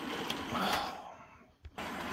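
Hornby model train running on its track, a steady clatter of wheels and motor, which cuts out almost to silence for about half a second midway, with a single click before it returns.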